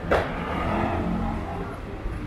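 Street traffic noise with motor vehicle engines running. A single sharp, sudden noise comes just after the start and is the loudest thing heard.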